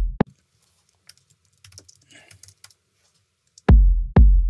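A looped electronic kick drum sample playing about two hits a second, each a short click attack over a deep boom, filtered down so that mostly low end remains. It stops just after the start, leaving a few faint clicks, and starts again near the end.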